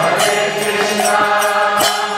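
Kirtan: a man's voice chanting a mantra over the sustained reedy chords of a harmonium. Bright hand-cymbal strikes and drum strokes keep the beat.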